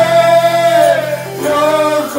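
A man singing a gospel hymn into a microphone with electronic keyboard accompaniment, holding one long note for about a second before moving on to the next.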